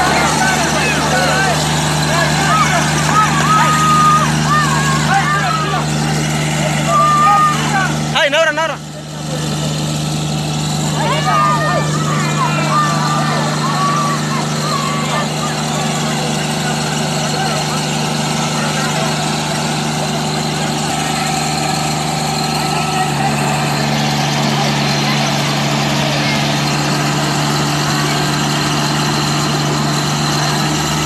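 Sonalika GT20 compact tractor's diesel engine running steadily at a constant speed. About two-thirds of the way through, its note settles slightly lower.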